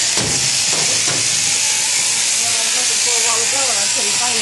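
Electric sheep-shearing handpiece running steadily with a high, even hiss, with a few knocks in the first second.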